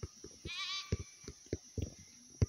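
Soft low thuds of a soccer ball being touched and dribbled on grass. About half a second in comes one short, high, wavering animal call, like a goat's bleat.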